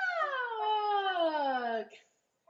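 One long meow-like call, falling steadily in pitch for nearly two seconds and then stopping.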